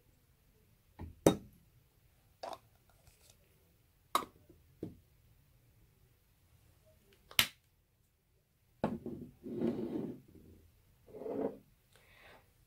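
Sharp clicks of a glass perfume bottle's spray nozzle being pressed back on and its cap set in place: three clicks about three seconds apart, then a few seconds of soft handling noise near the end.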